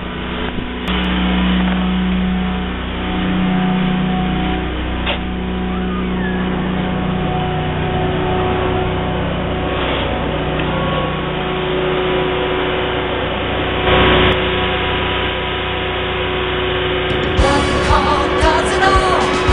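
Versa-Vac insulation removal vacuum, driven by an 18 HP Kohler V-twin gas engine, running at a steady loud drone with a few brief knocks. Music comes in near the end.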